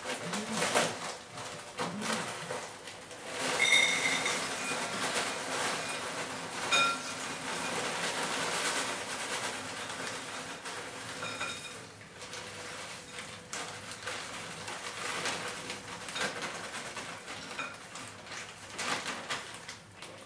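Plastic biscuit packet rustling and crinkling as dry biscuits are snapped by hand and dropped into a bowl, with many small crunches and cracks. The noise is densest a few seconds in.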